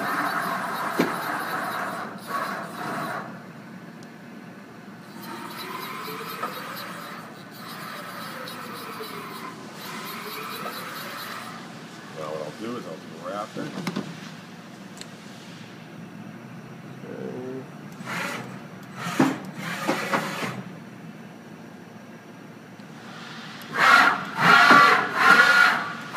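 Axis drives of an Okuma & Howa Millac 438V CNC vertical machining center moving the spindle head and table in several separate moves. There is a machine whine that rises and falls in pitch as the axes speed up and slow down, and a few knocks.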